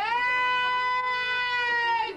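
A male folk singer's voice swoops up into one long, high, held note that sags slightly at the end, opening a sung line.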